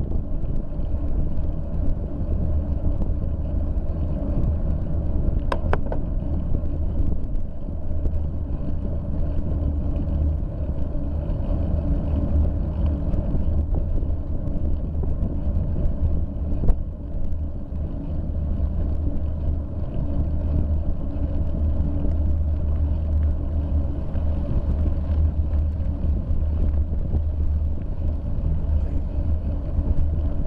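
Steady low wind rumble on a bicycle camera's microphone while riding, with road and tyre noise underneath. Two brief clicks, about five and a half and seventeen seconds in.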